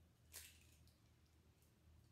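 Near silence, with one short, faint crackle about half a second in as an eggshell is broken open by hand over a glass bowl.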